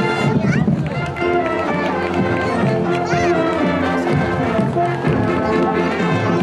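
High school marching band's brass section, with trombones, sousaphones and other horns, playing a tune with held notes and chords as it marches by.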